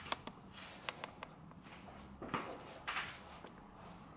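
A few light clicks and knocks, then two louder rustling shuffles about two and three seconds in: a person shifting position and handling a wooden stick.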